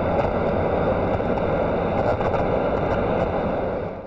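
Steady, rumbling noise sound effect under an intro title card. It fades in, holds level and cuts off abruptly near the end.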